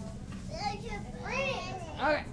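Children's voices calling out and chattering twice, over a steady low background din of a busy room.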